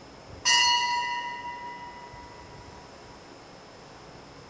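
A small altar bell struck once about half a second in, ringing clearly and fading away over about two seconds. It marks the elevation of the chalice at the consecration of the Mass.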